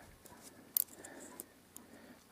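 Faint handling of a dial test indicator's small opened brass movement with a thin pick: a couple of small sharp clicks just under a second in, and a few fainter ticks.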